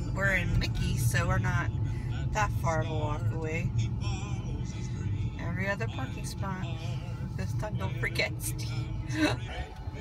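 Steady low rumble of a car's engine and tyres heard from inside the cabin while the car drives slowly, with indistinct voices over it.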